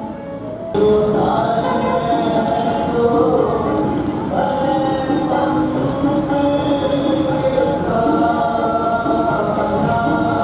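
Devotional hymn sung by a group of voices with musical accompaniment, cutting in abruptly and louder about a second in.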